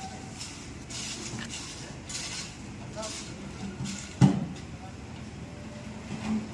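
Distant voices and short scraping noises around a road-work site, with one sharp clank about four seconds in.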